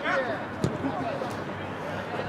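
Players' shouting voices at a distance on an outdoor football pitch, with a single thump a little over half a second in.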